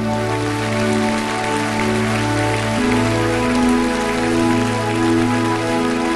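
Instrumental intro of a slow pop-rock song played live: held synthesizer chords that change every second or two over a steady bass note, with a dense patter of noise like rain behind them. No singing yet.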